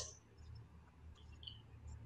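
Near silence in a pause in speech: faint room tone with a low hum and a few faint ticks.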